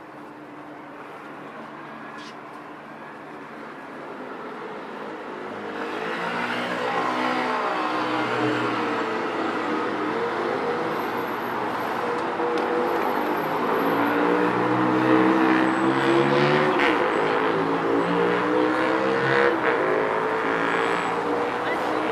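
Road traffic with vehicle engines running, growing louder about six seconds in and staying loud.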